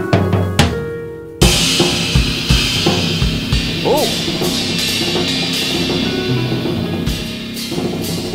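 Drum kit struck with soft mallets, its pads triggering pitched synth notes from a whole tone scale. About a second and a half in, a loud crash opens a dense, sustained wash of drums and cymbals over held notes.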